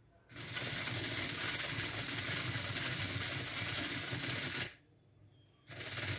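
The robot car's two small DC gear motors run with an even whir, switched on and off by the L293D driver. They start about a third of a second in, cut off suddenly near the five-second mark, and start again just before the end.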